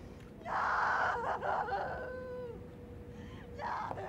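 A woman's anguished cry of grief: a harsh scream that breaks into a high wail falling in pitch, then a second, shorter sob near the end.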